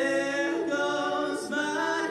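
Voices singing a cappella in a live rock show, the band having dropped out. Several sustained sung notes overlap, with little or no instrumental backing.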